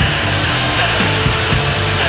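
Post-hardcore band recording: loud, dense guitar-driven rock played without vocals for these seconds.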